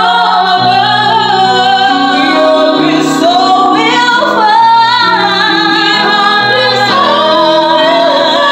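Two women singing a slow ballad duet with vibrato over sustained chords on an electronic keyboard; the sung line "And watch us from above" gives way to "We hope each soul will find" about halfway through.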